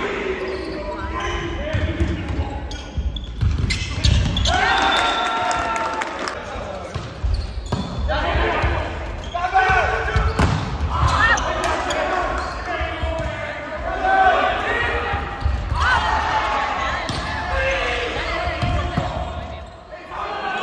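A volleyball rally in a large, echoing gymnasium: repeated sharp hits of the ball and its bounces on the court, with players shouting calls to each other.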